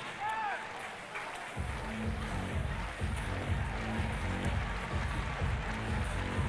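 Stadium crowd noise with music over the public-address system; a steady low beat comes in about a second and a half in.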